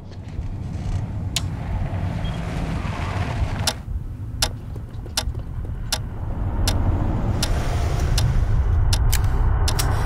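Trailer sound design: a low rumbling drone that grows louder from about six seconds in, cut through by about ten sharp clicks or hits at uneven intervals.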